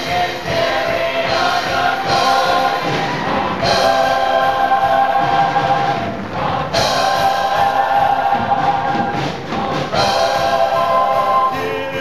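Large musical-theatre cast singing in chorus with instrumental accompaniment, in long held notes with brief breaks between phrases.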